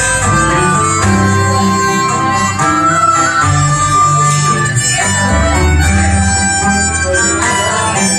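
A small traditional band playing a tune live: tenor banjo and button accordion with wind instruments held at the mouth, the harmonica leading, over the accordion's held bass notes.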